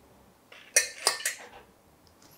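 A stainless-steel mesh strainer clinking and scraping against the rim of a small steel bowl, a short run of sharp metallic knocks lasting about a second.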